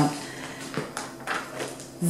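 Pages of a paper catalogue being turned and handled, with a few short rustles in the middle.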